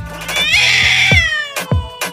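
A cat's single drawn-out meow, about a second long, its pitch falling at the end, over background music with a steady beat.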